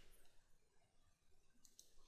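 Near silence, with a couple of faint, short clicks near the end from a computer mouse being clicked.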